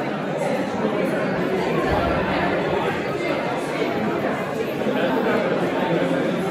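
Crowd chatter in a large hall: many people talking at once in a steady babble of overlapping voices, with no music playing.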